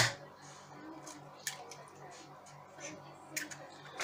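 An egg cracked once, sharply, against the rim of a plastic mixing bowl, followed by faint small clicks as it is broken open into the bowl.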